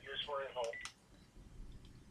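Faint short electronic beeps from a mobile phone as it is operated by hand, with low mumbled speech in the first second.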